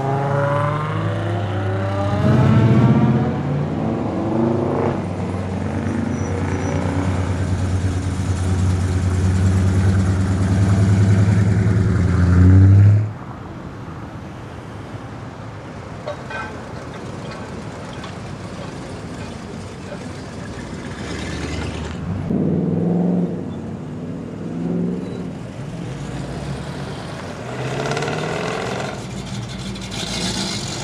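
Classic Mopar V8 cars rolling slowly past one after another, their exhausts running at low revs. The first car, an early-1960s Plymouth, is loud and steady for about thirteen seconds and cuts off suddenly. Quieter cars follow, with brief swells of revving past the middle and near the end.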